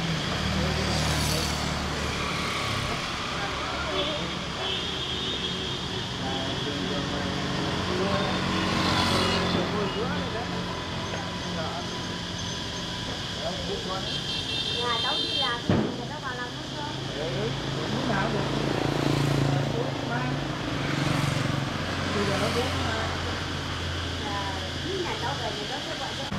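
Road traffic passing on the street: a steady engine hum with several vehicles going by one after another, each swelling and fading. Voices in the background and a sharp click about sixteen seconds in.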